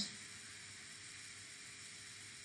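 Faint steady hiss of room tone and microphone noise, with no distinct events.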